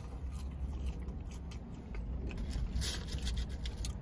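Soft chewing of a mouthful of french fries, with faint scattered clicks and a brief rustle near three seconds in, over a low steady rumble.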